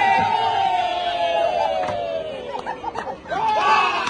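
Several men's voices shouting one long held call together, its pitch sagging slowly over about three seconds, then breaking into short shouted calls near the end: waiters' group chant for a dessert celebration.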